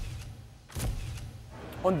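Indistinct noise of a street crowd in a rough phone recording, with a brief surge of noise about a second in.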